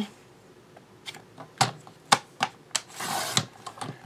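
Fiskars sliding-blade paper trimmer cutting a strip of computer paper: light clicks and taps as the paper and blade carriage are handled, then a short swish about three seconds in as the blade slides along the rail through the sheet.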